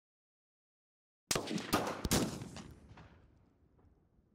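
Gunshot sound effect: a quick cluster of several sharp cracks starting about a second and a half in, followed by a long echo that fades out over the next second or so.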